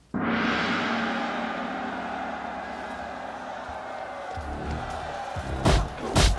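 A large gong struck once with a mallet, ringing out with a long, slowly fading shimmer. Near the end come two sharp punch impacts.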